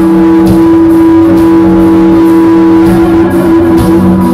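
Hard rock band playing live and loud, an electric guitar on a white Flying V-style guitar holding one long sustained note over bass and drums, the note changing near the end.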